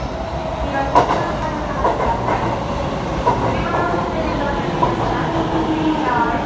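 An Ueno-Tokyo Line electric commuter train pulls into the platform and rolls past. Sharp clacks from the wheels over the rails come at irregular intervals, over a continuous rumble, with a steady hum in the second half.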